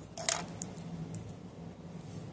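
Hands handling a synthetic wig. A brief crisp rustle-clatter about a quarter second in is followed by a couple of faint ticks as the fibres are pulled and fluffed.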